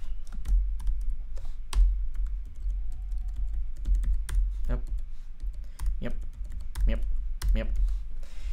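Typing on a computer keyboard: irregular keystroke clicks in quick runs, a few per second.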